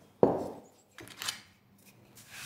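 A solid thunk as a metal flour dredger is set down on the wooden kitchen table, dying away quickly. It is followed by a lighter knock and a short rustle of hands and pastry on the floured board.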